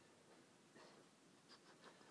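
Near silence: room tone, with a few faint, brief noises about a second in and near the end.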